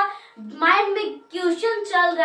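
Speech: a woman talking in a lively, rising and falling voice, with a short break about half a second in.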